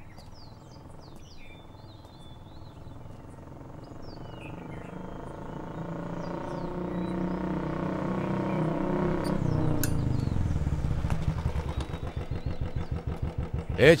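Royal Enfield single-cylinder motorcycle approaching and growing steadily louder, then slowing down about ten seconds in. It settles into an even thumping idle near the end.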